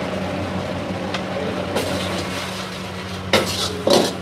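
Metal ladle scraping and clanking against a wok as food sizzles in it, over a steady low hum. Sharp clanks about two seconds in and twice more near the end, the last the loudest.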